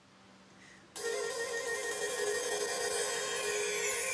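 Orchestra begins an arrangement with sustained, held notes that enter suddenly about a second in and slowly swell.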